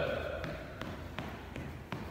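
Footfalls of a person jogging in place in shoes on a hardwood gym floor: light, evenly spaced thumps, about three a second.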